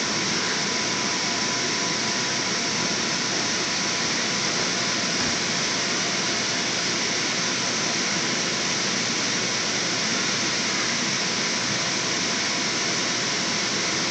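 Electric blower fan of an inflatable bounce slide running continuously, a steady, unchanging rush of air.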